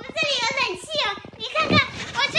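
A woman talking in Chinese in a high-pitched voice.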